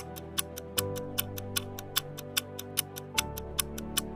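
Clock-ticking countdown sound effect, rapid and even at about five ticks a second, over background music with sustained notes.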